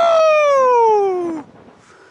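A person's long, loud yell, high-pitched, sliding steadily down in pitch and breaking off about a second and a half in, during a rope jump.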